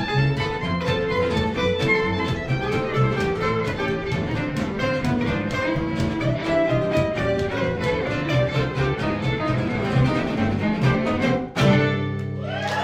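Live gypsy jazz quartet: violin playing the melody over upright bass and the steady chopped strumming of two acoustic guitars. Near the end the band breaks off briefly and lands a single loud final chord that ends the tune.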